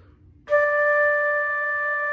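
Silver concert flute playing a single held D, the fingering with the thumb and fingers two through six down, starting about half a second in and sustained at a steady pitch.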